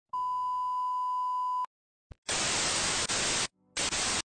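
A television test-tone beep, one steady high-pitched tone for about a second and a half, cut off abruptly. After a short pause come bursts of TV static hiss: one lasting a little over a second, then a shorter burst near the end. Together they form a 'colour bars and tone' glitch transition sound effect.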